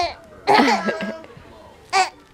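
Baby's short vocal burst, a giggly squeal falling in pitch, about half a second in, and a second very brief one near the end.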